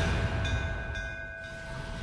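Background score of a TV drama: a held chord of several steady tones, fading down in loudness.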